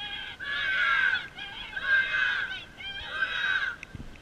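A group of children shouting together in three loud bursts about a second and a half apart: a team cheer from young rugby players lined up before kickoff.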